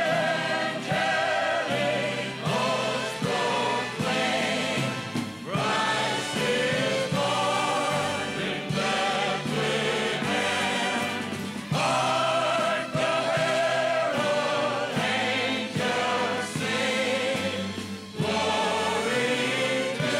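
A choir singing a sacred piece in long phrases of held, wavering notes over a low bass line.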